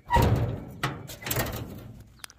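Metal clunks and scraping from the hood latch and front sheet metal of an old 1962 Chevy II being worked to pop the hood: a sudden surge at the start, then two more about half a second apart.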